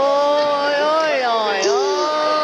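A young child's voice making a long, drawn-out vocal sound rather than words: one high note held with slow wavers, dipping briefly near the end.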